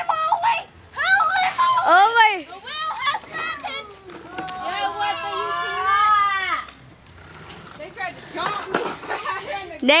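Excited high-pitched voices of children and adults yelling, with one long wavering cry held for about two seconds midway.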